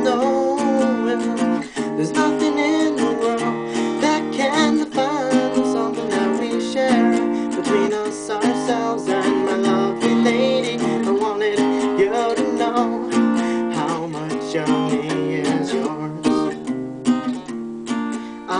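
Acoustic guitar strummed in a steady rhythm, chords ringing between the strokes.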